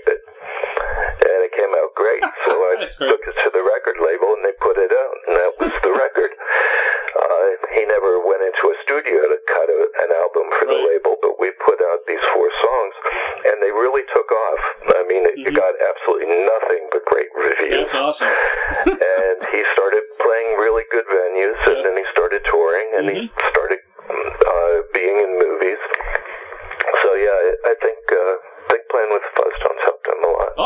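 Speech only: a man talking continuously, the voice thin and narrow as heard over a telephone line.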